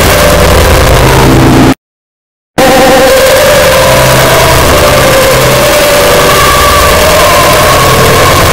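The 'yee' voice clip layered over itself an enormous number of times into a loud, distorted, continuous wall of noise, cut by a sudden silence of under a second about two seconds in.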